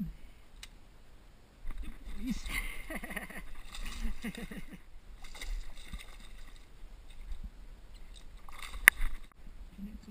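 Water splashing as a barramundi thrashes at the surface beside the boat, with voices calling out over it. A single sharp click comes near the end.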